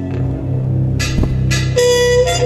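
Jazz trumpet holding long notes over a low steady drone, changing to a lower note near the end, from a restored 1984 reel-to-reel tape recording played through a loudspeaker.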